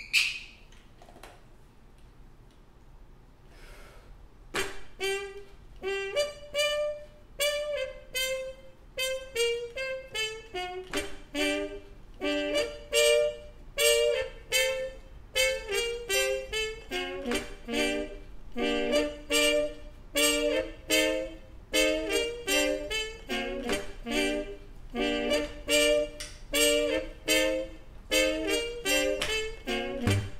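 Trumpet phrases looped and layered live: a short repeating trumpet figure starts about four seconds in, and a lower repeating line is stacked under it from about halfway through. A single sharp click comes at the very start.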